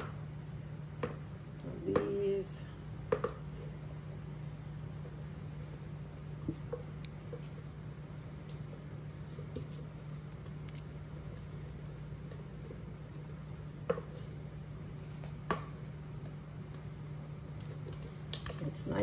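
A steady low hum with a few soft knocks and clinks as a stainless steel mixing bowl is tipped and handled over foil baking pans while thick cake batter is poured out.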